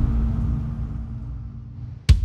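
A low rumbling drone with a steady low hum, fading away over the two seconds: trailer sound design.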